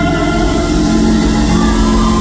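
Live R&B band music played loud through a concert PA: held chords over a steady bass line.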